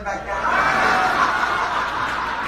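A seated audience laughing together, many voices at once, swelling loud about half a second in and holding.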